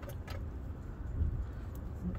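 Faint metallic clicks from the variable-geometry turbo's lever arm being worked back and forth by hand, over a low steady rumble. The mechanism still moves a little rough, the sign of a sticking, dirty VGT inside the turbo.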